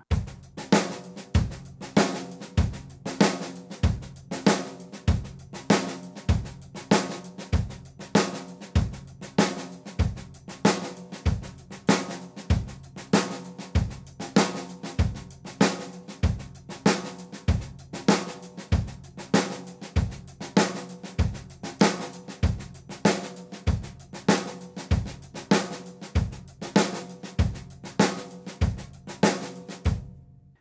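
Drum kit groove: steady eighth notes on the hi-hat over bass drum, with loud snare accents and quiet left-hand ghost notes on the snare squeezed right next to them, going soft, loud, soft. The loudest strokes fall about once a second in an even, unbroken pattern.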